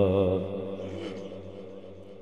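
A man singing a naat, holding a long wavering note into a microphone that fades away over about the first second.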